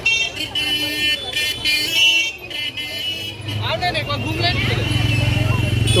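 Busy road traffic: vehicles passing with horn toots among background voices, and a steady low hum setting in about halfway through.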